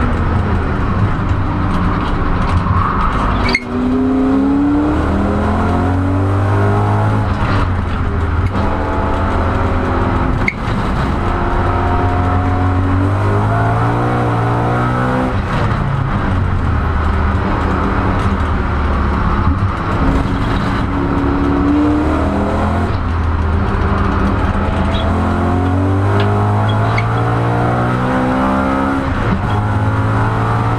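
BMW M3 E92 GT4's V8 engine heard from inside the cockpit at racing speed, the revs repeatedly climbing and falling back through the corners and gears, with two sharp breaks about three and a half and ten and a half seconds in.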